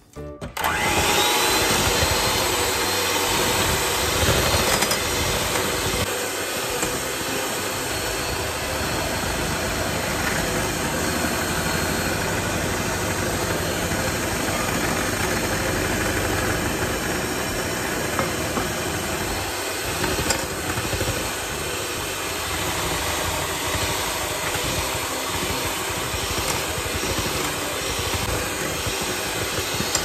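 Black & Decker electric hand mixer starting up about half a second in and running steadily at speed, its twin beaters whipping liquid in a glass bowl.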